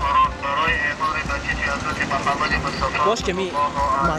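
Street sound: people talking nearby over a steady low rumble of road traffic.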